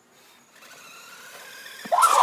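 Remote-control toy car driving across asphalt, its small electric motor and wheels growing steadily louder as it approaches, with a brief knock near the end.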